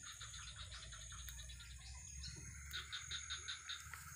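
Faint, rapid chirping from a forest animal: a steady run of short chirps, about five a second, over a low rumble.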